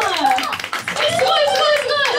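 Hand clapping mixed with excited women's voices calling out.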